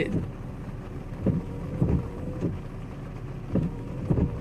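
Steady low engine rumble inside an idling pickup truck's cabin, with a faint steady hum and a few short, soft low thumps at irregular times.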